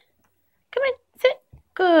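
A woman's high, sing-song voice praising a dog: two short calls, then a long drawn-out 'good' falling in pitch near the end.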